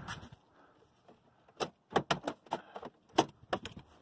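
A quick run of light clicks and knocks, with keys jangling, as the car's ignition key is handled and turned off. About ten short clicks come in a cluster from about a second and a half in to near the end, after a quiet start.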